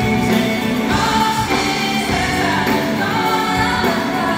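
Live band playing a song with singing, electric bass among the instruments, recorded from the audience.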